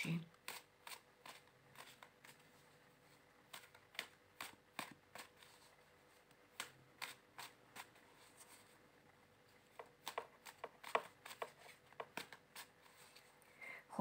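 A deck of tarot cards being shuffled hand to hand: faint, irregular clicks and slaps of cards against each other, coming in short flurries with pauses between.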